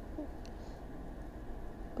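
Pause between speech: quiet room tone with a steady low hum and one faint click about halfway through.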